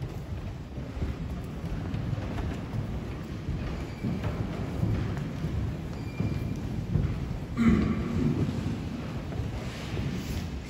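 Low, uneven rumble and rustle from a hand-held recording device being carried while its holder walks, with the shuffling movement of robed people around it. A brief louder sound stands out about three-quarters of the way through.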